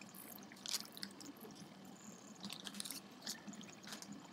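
Faint lake water lapping against a boat hull, with a few light clicks scattered through.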